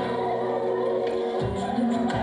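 Live acoustic music: an acoustic guitar with sustained singing over it, and a low thump returning about one and a half seconds in.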